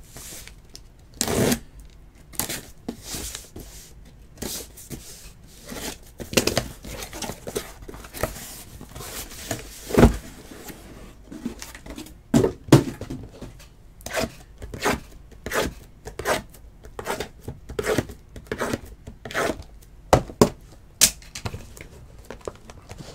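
Sealed trading-card boxes being handled and opened: irregular scrapes, taps and crinkles of cardboard and plastic wrap, with a sharp knock about ten seconds in.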